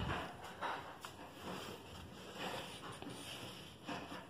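Quiet handling sounds of a wooden pattern square being shifted and laid flat on fabric over a cutting table: soft brushing with a few light, irregular knocks.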